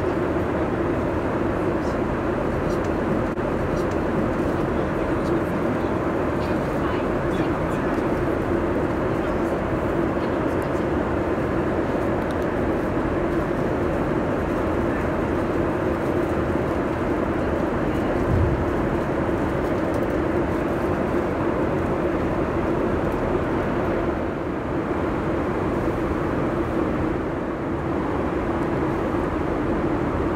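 Steady in-flight cabin noise inside a Boeing 747-8: an even airflow and engine rush with a constant low hum. A single brief low knock comes about eighteen seconds in.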